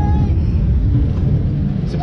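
Onboard rumble and wind rush of a spinning roller coaster car running along its track, a loud, steady low noise.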